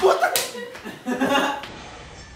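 A sharp slap about a third of a second in, among startled voice fragments, as a frightened scream dies away; the sound then falls to faint room sound.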